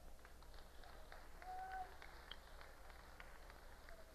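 Near silence: faint room tone with scattered soft clicks and a brief faint tone about one and a half seconds in.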